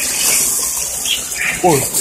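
Water pouring steadily from a hose into a plastic bucket, a continuous rushing hiss.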